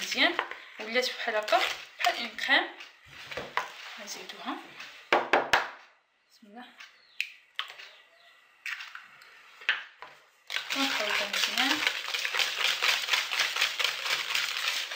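A wire whisk beating a thick butter, sugar and ground-almond cream in a bowl, a fast, continuous clatter and scrape against the bowl in the last few seconds. About five seconds in, a few sharp knocks as an egg is cracked against the bowl.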